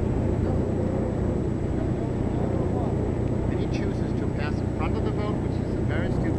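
Steady low drone of the UC3 Nautilus submarine's engine as it runs on the surface, with faint voices in the background.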